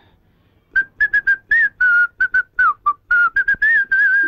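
A man whistling a quick tune of short, choppy notes, starting just under a second in.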